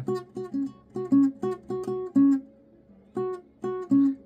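Acoustic guitar picking a slow melody line high on the neck around the 7th fret, each note plucked and left to ring briefly, with a short pause a little past the middle.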